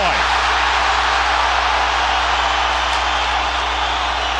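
Large arena crowd cheering and yelling steadily through an on-ice hockey fight, heard through a TV broadcast with a low, steady hum underneath.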